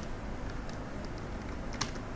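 A few keystrokes on a computer keyboard, the sharpest near the end, over a steady low background hum.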